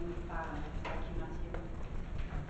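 Indistinct, low voices in a meeting room, too faint to make out words.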